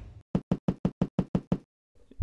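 A quick series of about nine sharp knocks, roughly seven a second, lasting just over a second: an edited-in knocking sound effect.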